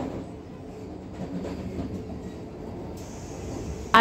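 Steady low running rumble of a Vande Bharat Express train, heard from inside the coach.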